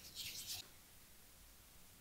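Hands handling soft cookie dough: a brief, soft rubbing rustle in the first half second, then near silence.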